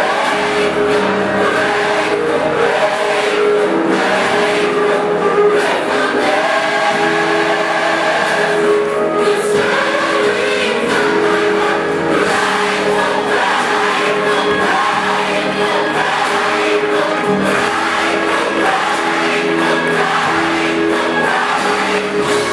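Gospel music with a choir singing, at a steady, loud level.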